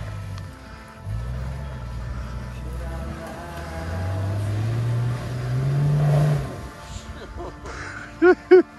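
An off-road 4x4's engine revving under load on a muddy climb. Its pitch rises steadily from about halfway through, then drops away suddenly near the end as mud sprays from the wheels. Background music plays underneath.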